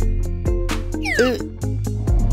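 Cartoon background music with a steady bass line and beat. About a second in, a short pitched vocal sound, rising and falling in pitch, cuts across it.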